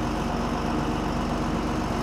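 Heavy vehicle engine idling steadily, with an even low throb.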